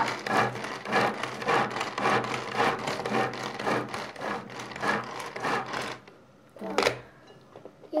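Hand-pulled cord food chopper worked in quick repeated pulls, its spinning blades rasping through chopped plum and apple in the plastic bowl in a fast, even rhythm that stops about six seconds in. A single sharp knock follows near the end.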